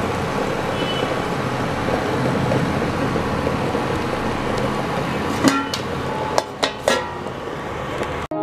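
Whole eggs boiling in a pan of water: a steady bubbling rush of a rolling boil. Four sharp clinks come between about five and seven seconds in.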